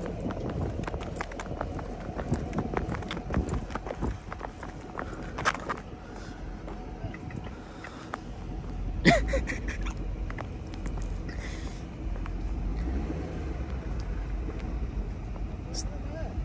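Corvette's LS3 V8 running at low revs some way off, a faint low rumble under a steady patter of small clicks and knocks close to the microphone, with one short sharp sound about nine seconds in.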